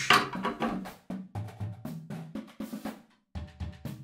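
A drum key clicking and knocking against the tension rods and rim of a marching tenor drum, with the drums ringing low at each contact, as the lugs are detuned to take off a broken head.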